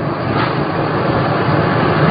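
Road and engine noise inside a moving car's cabin, a steady low rumble recorded on low-quality home video.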